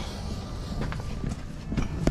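Footsteps and camera handling noise: scattered short knocks and rustles over a low rumble as the camera is carried by hand.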